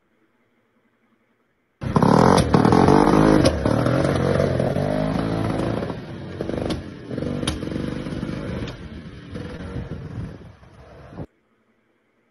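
Vintage Arctic Cat Panther two-stroke snowmobile passing by. The engine comes in loud about two seconds in, its pitch dropping as it goes past, then fades away until the sound cuts off near the end. Its carburetor still needs adjusting, so the sled is not running perfectly yet.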